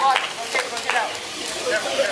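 Indistinct voices over a steady, hissy clatter with a few sharp clicks.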